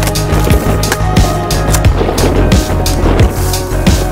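Background music with a fast, steady beat.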